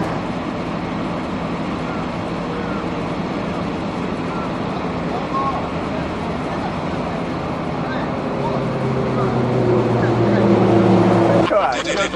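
Motorcycle engines running steadily at idle, with voices chatting over them; the engine sound grows louder in the last few seconds and cuts off abruptly just before the end.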